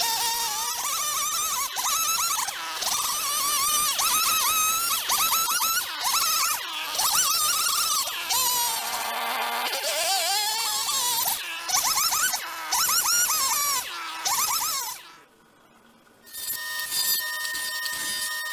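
Chainsaw ripping lengthwise along a wooden plank, its engine pitch repeatedly sagging and recovering as the chain bogs in the cut. After a short gap near the end, a woodworking jointer-planer's motor starts running with a steady whine.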